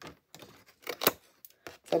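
A sheet of waterslide decal paper being picked up and handled: a few short, sharp paper crackles and taps, the loudest about a second in.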